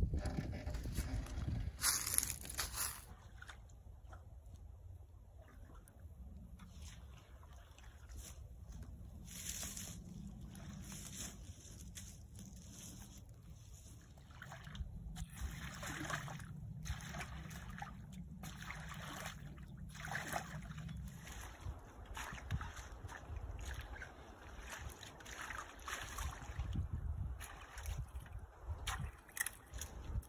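A garden rake dragged through shallow, muddy creek water and debris: repeated irregular strokes of sloshing, splashing and scraping as leaves and sticks are pulled out of the water.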